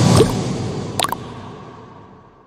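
Animated-logo sound effect: a burst of noise with a droplet-like plop near the start and a sharp double click about a second in, then a steady fade-out.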